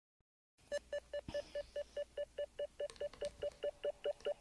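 Electronic beeps of a karaoke backing track's intro, pulsing evenly about five times a second and starting about half a second in.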